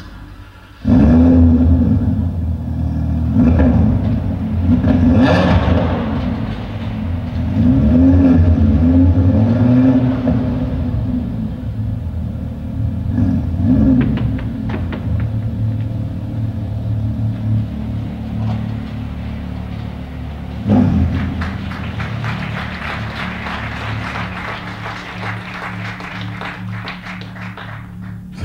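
Lamborghini Huracán LP 610-4's V10 engine revving in repeated rising-and-falling sweeps over a deep rumble, then running more steadily. There is a single sharp thump about three-quarters of the way through.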